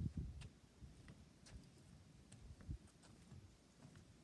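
Near silence: a faint low rumble with a few soft, irregular ticks.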